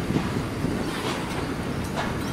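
A Melbourne A-class tram rolling slowly along its tracks as it pulls into the stop: a steady running rumble of wheels on rail with a few faint knocks.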